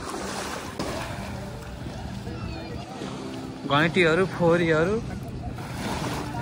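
Beach ambience: wind on the microphone and small waves washing on the shore, with a murmur of distant voices. About four seconds in, a loud voice with a wavering pitch rings out for about a second.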